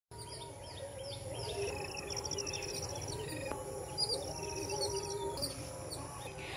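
Several birds chirping and calling together: repeated short falling chirps, with a rapid high trill about two seconds in.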